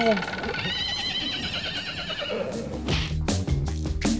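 A comic horse-whinny sound effect: one wavering, high-pitched call lasting about two seconds. Music with a drum beat comes in over the last second or so.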